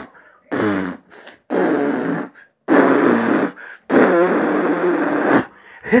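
A man blowing hard, straight into a phone's microphone: four long puffs of breath, each longer than the last, the final one about a second and a half, with a buzzing flutter of the lips in them.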